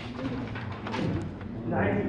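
A man's voice speaking in a lecture, low and indistinct.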